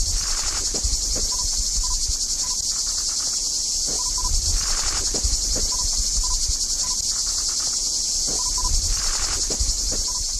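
A steady, high-pitched chorus of insects, a continuous shrill buzz without pause, with a low irregular rumble underneath.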